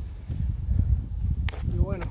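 Irregular low rumbling of wind and handling noise on a phone's microphone while walking, with a sharp click about one and a half seconds in and a brief vocal sound near the end.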